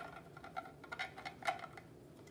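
A few light clicks and taps of hard 3D-printed plastic model parts being handled, about every half second, as a door piece is pulled off the model's hull.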